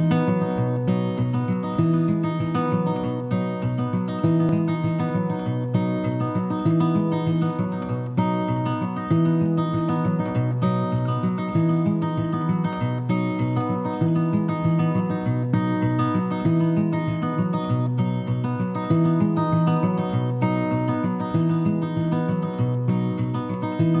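Background music: acoustic guitar strumming chords in a steady rhythm.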